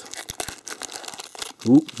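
Foil lid being peeled back from a plastic snack tub: a run of small crinkling, tearing crackles.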